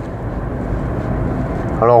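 Steady road and wind noise inside the cabin of a Dacia Spring electric car as it accelerates to merge onto a fast road, slow to reach 100 km/h.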